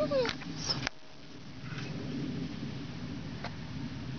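A short, falling whine like a pet's whimper in the first half-second, with two sharp clicks, then a steady low background hum.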